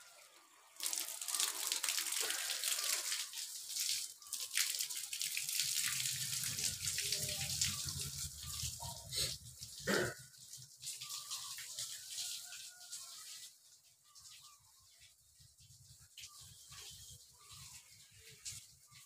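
Water pouring from a watering can over stacked plastic oyster-mushroom bags, splashing and running down them. It starts about a second in and stays loud until about two-thirds of the way through, with one knock about ten seconds in. It then drops to a lighter patter and dribble.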